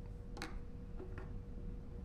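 Two light clicks over quiet room tone with a faint steady hum: a small plastic earbud being set down in its cardboard box, the sharper click about half a second in and a softer one about a second in.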